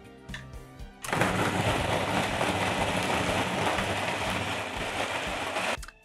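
Food processor running, its blade chopping thawed potato pieces and cubed kefalotyri cheese with flour and seasonings into a mixture. A steady rough noise over a low motor hum starts suddenly about a second in and cuts off just before the end.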